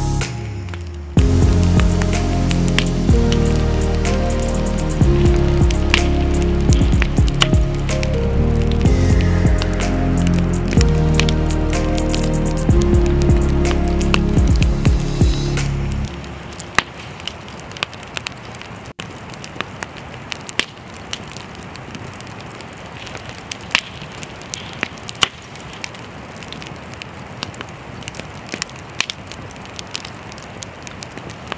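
Background music with slow sustained notes, cutting off about halfway through; after it, a wood campfire crackling and popping, with frequent sharp snaps.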